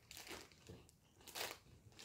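Two faint, short crunches as a man chews a crunchy puffed candy, with the plastic candy bag crinkling in his hand.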